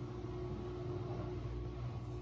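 A steady low hum with a faint even background hiss, unchanging throughout.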